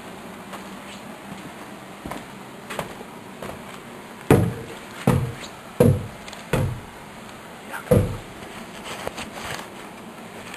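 Footsteps on wooden basement stairs: a few softer steps, then from about four seconds in heavy thuds about one every 0.7 seconds as a person climbs the open wooden treads.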